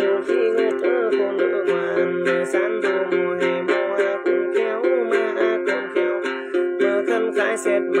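Đàn tính, the Tày-Nùng gourd lute, plucked in a quick, even rhythm, with a man's voice singing a gliding Then chant over it at times.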